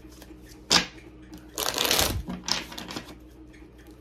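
Tarot cards being handled and drawn from the deck: a sharp card snap under a second in, then a longer rustle of cards around two seconds in and a shorter one just after.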